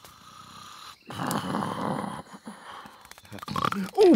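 A cartoon character's snore: one long, noisy breath about a second in that fades away over the next two seconds.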